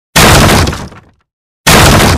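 Two loud crashing, breaking-style sound effects added in editing, each sudden and fading out over about a second. The second comes about a second and a half after the first.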